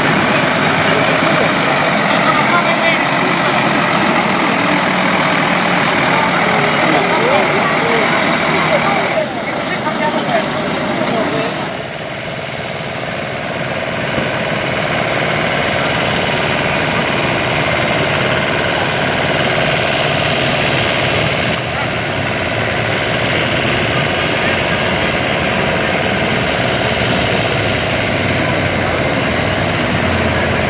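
Heavy Iveco tractor unit's diesel engine running as it hauls a 250-tonne load at walking pace, under the chatter of a crowd of onlookers. The sound changes abruptly about nine and twelve seconds in.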